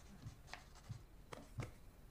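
Faint scratching of a pencil writing on paper, in a few short strokes.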